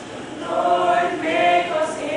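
Small choir of young women singing together, with a louder phrase coming in about half a second in.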